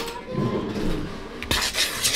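Wire whisk stirring dry seasoned flour in a large mixing bowl: a scratchy, hissing rasp that starts after a click about a second and a half in.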